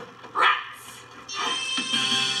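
A performer doing a dog imitation: a short, loud bark-like yelp about half a second in, over a quiet pause in the music. Sustained instrumental accompaniment comes back in a little past the middle.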